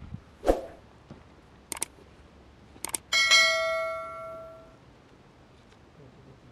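Subscribe-button animation sound effects: two sharp mouse-style clicks about a second apart, then a bright notification-bell chime that rings out and fades over about a second and a half. A short low sound comes about half a second in.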